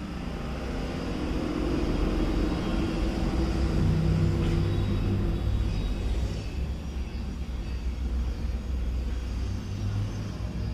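A steady low rumble that grows louder over the first two seconds, with a faint hum over it in the middle.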